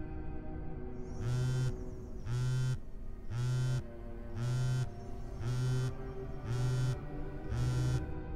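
Mobile phone on vibrate buzzing in seven pulses about a second apart, starting about a second in, over faint background music.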